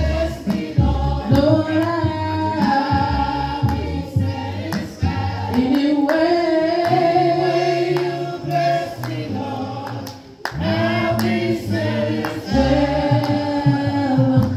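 A group of voices singing a slow hymn in long held notes, with a brief break about ten seconds in.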